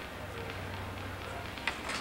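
Quiet background of an old recording in a pause between lines: a steady low hum under a soft hiss, with one brief sharp sound, like a breath or a small click, near the end.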